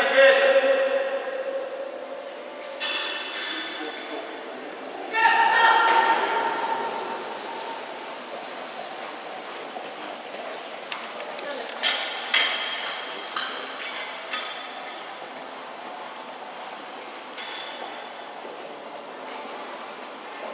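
A person's long drawn-out calls, three in the first seven seconds, echoing in a large indoor hall, followed by a few short sharp clinks about twelve to thirteen seconds in.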